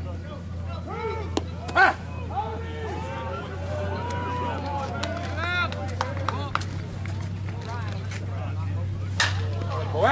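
Players' chatter and shouts over a steady low hum, with a single sharp crack near the end as a bat hits a slowpitch softball.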